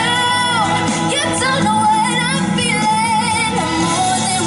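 A female solo vocalist singing live into a handheld microphone over instrumental pop-ballad accompaniment, holding notes with a wavering vibrato.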